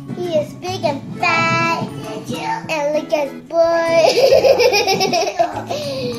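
A young girl's voice making drawn-out playful sounds rather than words, over light background music, breaking into laughter near the end.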